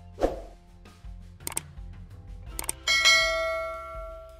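Subscribe-button animation sound effects: a short whoosh, two mouse clicks, then a bell ding that rings out for about a second and a half and is the loudest sound.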